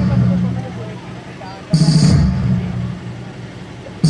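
Loudspeaker playing the opening of a recorded track for a stage performance: a heavy boom about two seconds in, dying away slowly, over faint crowd chatter.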